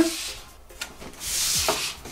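Paper sheets and hardboard clipboards sliding and rubbing across a tabletop: a short scrape at the start and a longer one a little past the middle.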